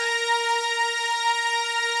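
Synthesizer lead holding one long sustained note, with a bright, buzzy tone full of overtones. It slides up in pitch into the note just as it begins.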